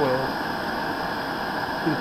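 Steady hiss of a mini canister stove's burner running on a propane-butane cartridge under a steel pot of water, which is heating toward a boil with bubbles forming.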